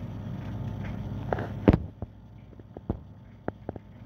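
Phone handling noise: a steady low rumble, then a sharp knock a little under halfway through, after which the rumble drops away and a few light clicks follow.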